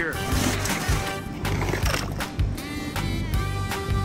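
Film soundtrack music with held tones, mixed with short clattering knocks and clicks of sound effects.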